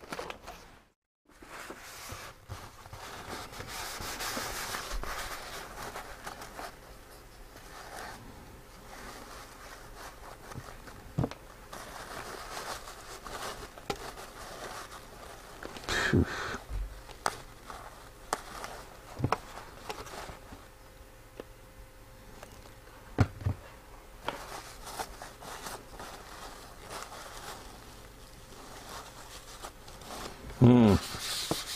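A blue wipe rubbed and crinkled across a wet plastic cutting mat, mopping up a spill, with a few light knocks along the way.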